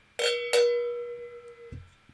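A cowbell rung twice in quick succession, each strike ringing with a clear metallic tone that fades, then is cut off suddenly near the end.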